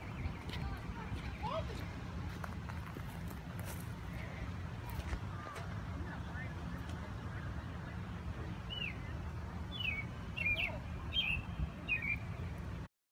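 A few short, high bird chirps in quick succession near the end, over a steady low rumble.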